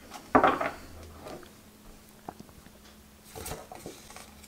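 Tarot cards being handled as a card is slid off the front of the deck and tucked behind it. There is a short, loud scrape about half a second in, a few light clicks, and another scrape just after three seconds.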